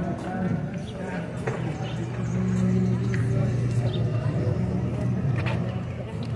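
A low, steady motor hum that swells a little after the first second and eases off near the end, over faint street noise.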